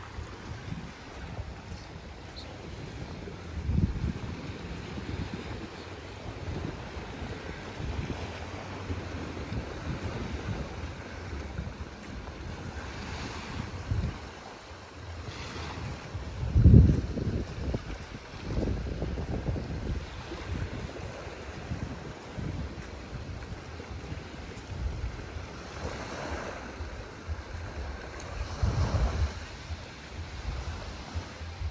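Small waves washing onto a sandy beach, with wind gusting on the microphone in low rumbles, the strongest a little past halfway through.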